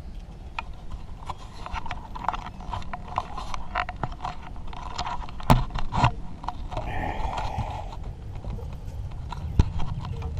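Fishing tackle being handled in a boat: irregular clicks and knocks, the sharpest about halfway through, over a steady low rumble.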